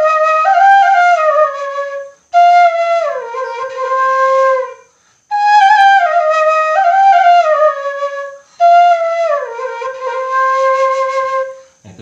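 Bamboo suling flute playing a falling dangdut melody, with notes sliding between pitches through half-covered finger holes. Four phrases, each stepping down to a held low note: the same two-phrase line played twice.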